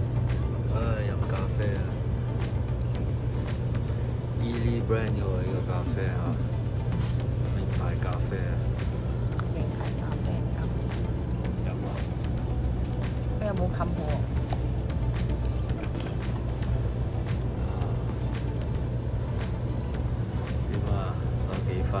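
Steady low rumble inside the passenger cabin of a Taiwan High Speed Rail train running on the line, with faint voices now and then.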